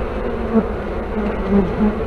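Honeybees buzzing close up at a hive entrance fitted with a pollen trap, the buzz of individual bees wavering up and down in pitch as they come and go.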